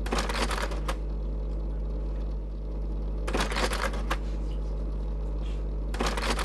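Slide projector changing slides: two bursts of mechanical clicking and clattering, each under a second long and about three seconds apart, with a third starting at the very end, over a steady low hum.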